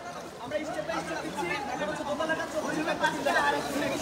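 Several people talking at a distance, their voices overlapping in indistinct chatter.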